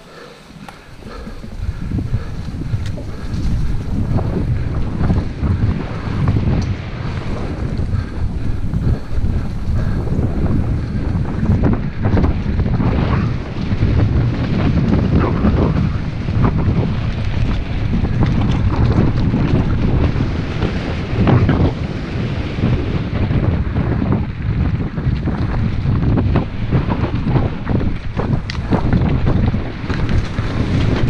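Wind rushing over the microphone of a camera riding on a mountain bike down a rough dirt singletrack, with frequent short knocks and rattles from the bike jolting over the trail. It comes in after a quieter first second.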